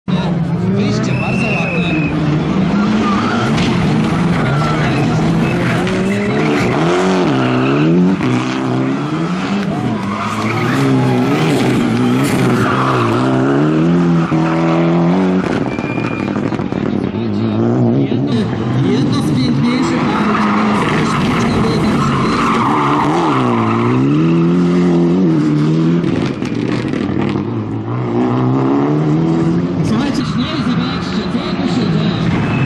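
Ford Fiesta Proto rally car's engine revving hard through a tight stage, its pitch climbing and dropping again and again as it accelerates, lifts off and brakes for the corners, with tyres skidding on the tarmac.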